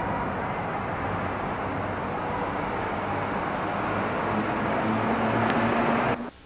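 Steady rumble of street traffic, slowly growing louder, picked up by a camcorder microphone.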